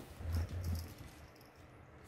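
Two kittens wrestling on a playpen's fabric floor: two soft low thumps in the first second, then light scrabbling of paws.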